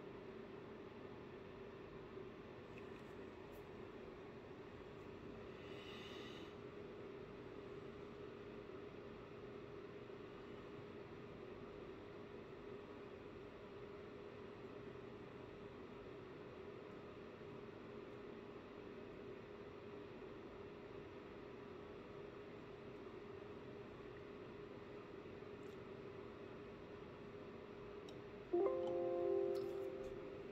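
A steady low electrical hum, then near the end a short multi-tone chime from the flashing software as the ECU write finishes successfully.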